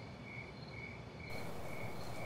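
Crickets chirping, a short chirp repeating evenly about twice a second. About a second in, a faint steady hiss comes up under the chirping.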